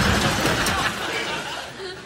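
Stifled chuckling and laughter over a noisy stretch of TV soundtrack that fades out toward the end.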